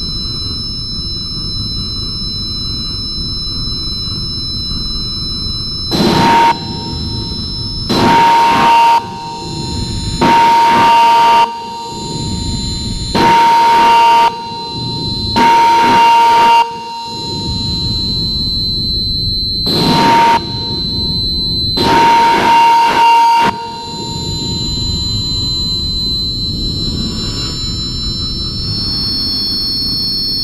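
Harsh noise drone music: a steady low rumbling noise bed with thin high whining tones, broken seven times by louder blasts of harsh noise carrying a steady mid-pitched tone, each lasting about a second and cutting in and out abruptly.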